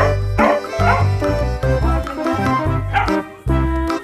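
A Filipino askal (mixed-breed dog) barking a few short times over background music.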